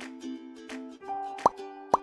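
Light plucked-string background music, with two quick rising 'bloop' pop sound effects about half a second apart in the second half, the louder events over the music.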